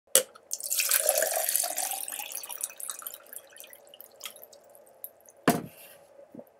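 Water poured from a bottle into a drinking glass: a click, then about two seconds of pouring that thins out into drips. A single knock comes near the end.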